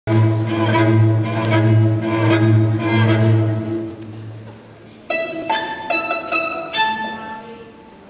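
Bowed string music: a long low note held for about four seconds and fading, then a run of shorter, higher notes about twice a second.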